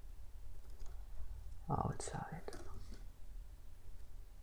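A brief, soft, half-whispered utterance from a man about two seconds in, lasting under a second, over a steady low electrical hum.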